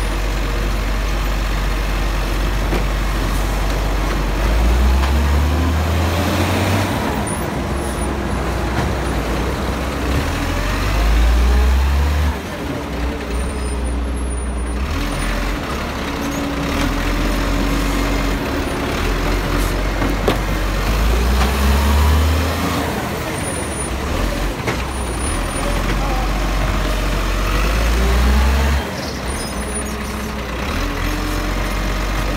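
Dennis side-loading garbage truck running while its automated arm lifts green-waste bins to empty them into the hopper. The diesel engine idles and rises in loudness four times as it powers the hydraulic arm, with a steady held tone through the middle.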